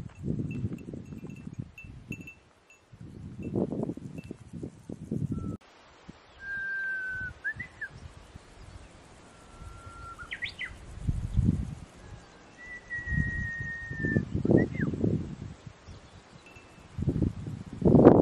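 Wind buffeting the microphone in gusts. Through the middle, a bird sings three or four long, level whistled notes, each ending in a quick upward flick.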